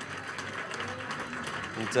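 A hall crowd applauding steadily, with voices faint beneath the clapping.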